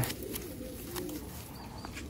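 Pigeon cooing softly: a few low coos that rise and fall in pitch, with a faint click about a second in.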